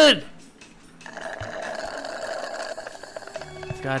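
Trailer soundtrack played back: a line of dialogue ends, then a steady buzzing sound-effect or music texture runs, joined about three and a half seconds in by a low held note and a quick run of ticks as the title card comes up.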